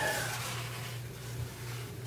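Quiet background between words: a faint, steady low hum with light hiss, and no distinct event.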